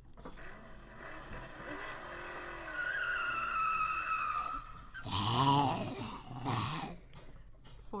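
Car driving off with tyres squealing in a long falling whine, then a loud voice crying out about five seconds in and again briefly a moment later.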